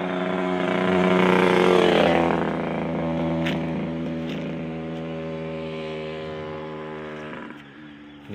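Engine of a passing motor vehicle, growing louder to a peak about two seconds in, dropping slightly in pitch as it goes by, then fading away and falling off near the end.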